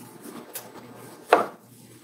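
Quiet room tone with a faint tick about half a second in, then a single short knock a little past halfway.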